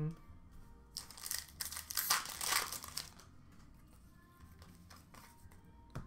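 Plastic trading-card pack wrappers crinkling and rustling as they are handled, in a few bursts during the first half, then quieter.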